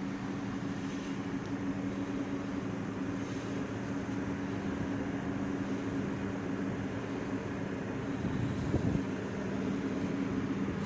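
Steady low drone of a ship's running machinery, holding two low tones, with a brief thump near the end.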